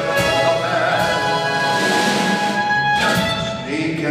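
Live band music from clarinet, accordion and violin, holding sustained notes as the drinking song ends, with a new chord coming in about three seconds in.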